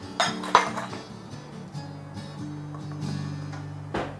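Two quick clinks of a spoon against a bowl in the first half second, over steady background music.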